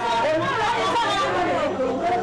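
A woman singing into a handheld microphone, with other women's voices overlapping hers.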